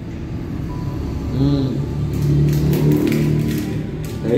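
A man humming a low, drawn-out 'mmm' with his mouth closed while chewing a bite of food.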